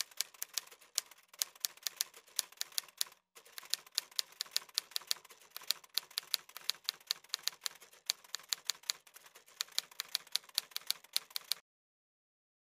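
Typewriter sound effect: a fast run of key clicks, several a second, with a short break about three seconds in, stopping just before the end.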